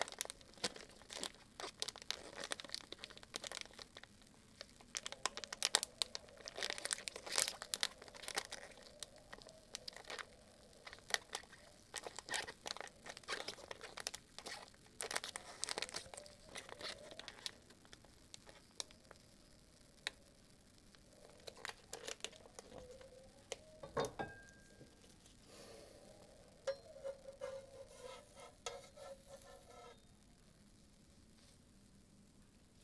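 Plastic ice cream wrapper crinkling as it is handled, in dense bursts of quick crackles, with one sharper knock about three-quarters of the way through.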